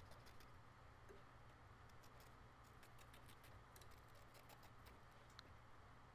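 Faint, quick, irregular ticks of scissors snipping fabric close to the embroidery stitching.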